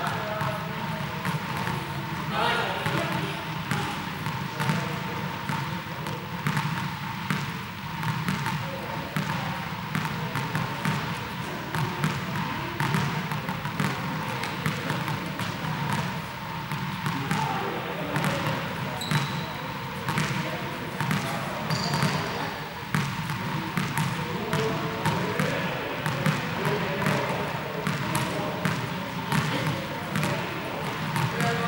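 Echoing sports-hall din: indistinct voices under many irregular knocks and ball bounces on the court floor.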